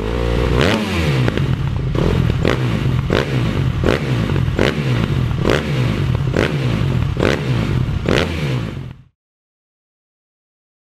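Outro soundtrack with a sharp swooshing hit about every three-quarters of a second over a low, pulsing rumble. It cuts off abruptly about nine seconds in.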